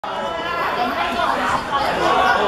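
Several people's voices talking and calling over one another in Cantonese-style chatter, with no single clear speaker.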